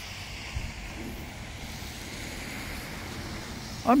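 Steady outdoor background noise: an even hiss with no clear event, and a soft low bump about half a second in.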